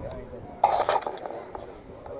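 Handling noise: a loud rustle and knocks for about half a second near the middle as the camera rubs against clothing and is moved, over faint background voices.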